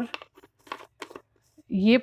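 A few short, quiet clicks and rustles from handling a spoon and container while rose powder is measured out for a face pack.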